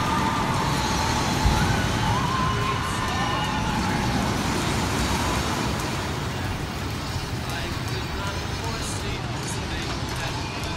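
Outdoor amusement-park ambience: a steady low rumble of noise with distant voices, a few of them calling out in the first few seconds.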